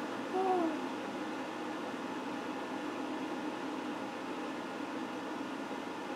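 A short hooting vocal note that rises and falls in pitch about half a second in, followed by steady faint room noise.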